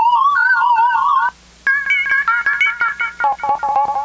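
Roland JP-8080 virtual-analog synthesizer sounding preset lead patches: a lead line with wide, warbling vibrato that stops about a second in, then after a short gap a higher phrase that breaks into fast repeated short notes near the end.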